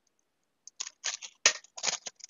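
Handheld single-hole punch squeezed through a cardboard photo frame: a run of short clicks and crunches starting under a second in, as the punch works through the card.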